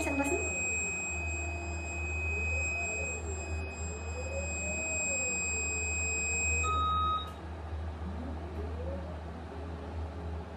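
Dental panoramic X-ray machine scanning: a steady high-pitched warning tone sounds during the exposure over a low hum from the rotating arm. The tone cuts off about two-thirds of the way through and is followed by a short lower beep as the scan ends.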